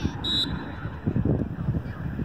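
A referee's whistle blown once in a short, high blast, over low rumbling.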